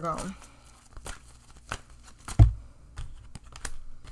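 A deck of tarot cards being shuffled by hand: a run of light, papery clicks and flicks, with one low thump about halfway through.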